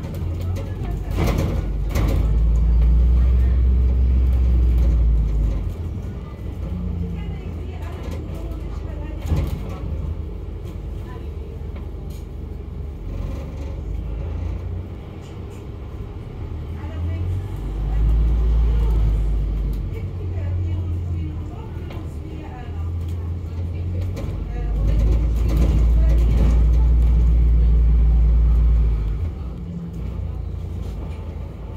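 Inside a double-decker bus: the engine and drivetrain give a deep, loud rumble as the bus pulls away, in three long stretches (about two seconds in, around eighteen seconds, and from about twenty-five seconds until shortly before the end), with quieter running between them.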